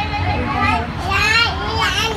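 Young children's high-pitched voices, talking and calling out, over a steady low background hum.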